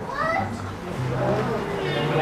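Indistinct voices talking quietly in the background of a shop, with no clear words.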